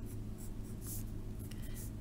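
Pen writing on lined notebook paper: a few short scratchy strokes over a steady low hum.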